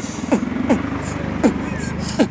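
Beatboxing at a steady tempo: deep kick sounds that fall in pitch, nearly three a second, with crisp hi-hat-like clicks. A low steady rumble runs underneath.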